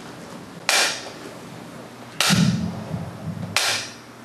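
Three sharp wooden clacks of a jukbi (Buddhist bamboo clapper), evenly spaced about a second and a half apart, each with a short ring in the hall: the signal that opens a moment of silent prayer.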